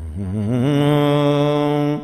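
A man's solo voice chanting an Ethiopian Islamic manzuma, unaccompanied: after a breath it rises onto one long held note that stops near the end.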